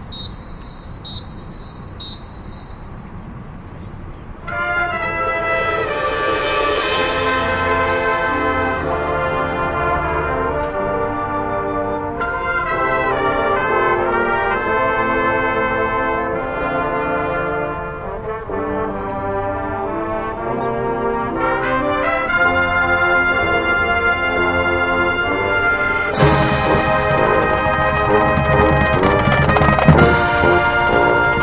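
High school marching band opening its show: after a few seconds of quieter ambience with some short ticks, the brass section comes in with loud, sustained, shifting chords. Near the end the full band hits harder, with a bright crash and heavy drums.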